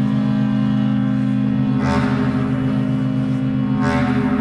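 Contemporary free-improvised music for pipe organs and bass clarinets: several low tones held and overlapping in a dense drone, the lowest notes pulsing slowly. A rush of airy noise swells in about two seconds in and again near the end.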